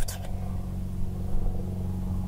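Steady low hum.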